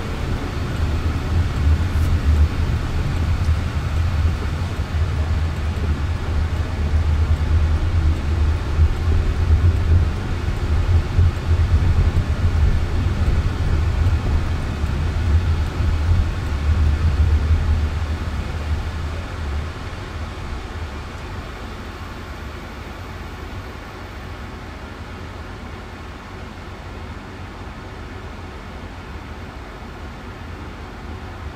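Road and tyre noise inside the cabin of a Jaguar I-Pace electric car driving on a city road: a heavy low rumble that falls to a quieter, steadier hum about two-thirds of the way through as the car slows for traffic ahead.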